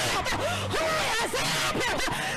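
Congregation clapping fast and shouting with many overlapping whoops during a church praise break, with music and a low bass line underneath.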